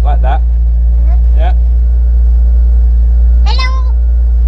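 BMW M Roadster's engine idling with a steady low hum. Short stretches of voice sound over it, and near the end there is a brief high-pitched vocal squeal.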